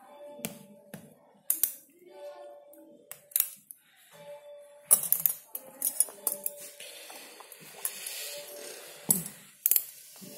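Steel surgical instruments (artery forceps and clamps) clicking and clinking as they are handled at the incision, a long irregular run of sharp metallic clicks. A steady tone comes and goes underneath.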